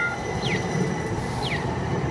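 Atlanta Streetcar, a Siemens S70 light-rail car, passing close by at street level: a steady running rumble with a faint high whine. A short falling chirp repeats about once a second.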